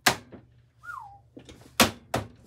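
HYTE Y60 PC case top panel being pressed down and snapping into place: two sharp clicks, one right at the start and a louder one near the end.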